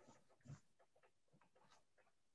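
Near silence: room tone with a few faint ticks and one brief faint sound about half a second in.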